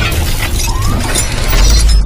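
Cinematic logo-reveal sound effects: glassy shattering and clinking hits layered over a deep bass rumble, with a short rising swoosh a little under a second in and the bass swelling near the end.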